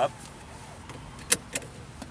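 Car seat belt pulled across and latched: one sharp click a little past halfway as the latch plate snaps into the buckle, then a fainter click.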